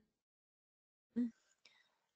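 Near silence in a pause of speech, broken about a second in by one brief, soft vocal sound from the presenter, a short murmur or breath.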